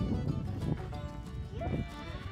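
A goat bleating once, briefly, near the end, over background music.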